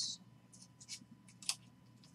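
Trading cards being handled: a few faint, sharp clicks and slides as chrome cards and a plastic card sleeve are flicked and shifted against each other, the crispest click about one and a half seconds in.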